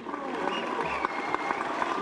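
Crowd applauding, a steady dense patter of many hands clapping.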